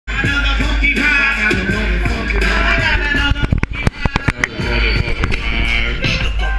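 Live hip-hop music played loud through a club PA and heard from within the crowd, with a deep steady bass and voices over it. About halfway through, the music thins into a quick run of sharp hits before the full beat comes back.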